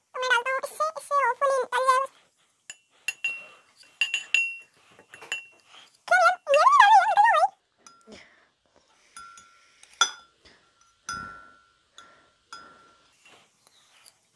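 Metal spoon and wire whisk tapping and scraping against glass while thick whipped coffee is scooped and scraped into a glass mug: a scatter of light clinks, several ringing briefly.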